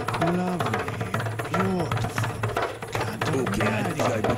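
Hand drum struck in a quick, dense rhythm over a steady low hum, with a voice making wordless rising-and-falling swoops about every second and a half.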